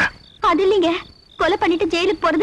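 Crickets chirping in a steady night ambience, short high trills repeating in the pauses, under a line of spoken dialogue that is the loudest sound.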